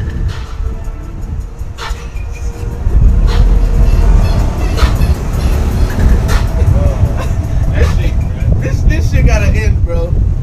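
Wind buffeting the microphone: a low rumble that gets louder about three seconds in, with voices underneath.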